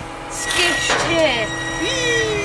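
Brief high, gliding vocal sounds, voice-like but with no words, over a steady mechanical drone.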